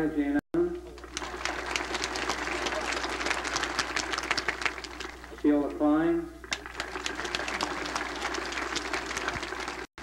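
A crowd applauding with a dense patter of claps. The applause is broken by a short spoken name over a loudspeaker about five and a half seconds in, then resumes. The audio cuts out for an instant twice, about half a second in and just before the end.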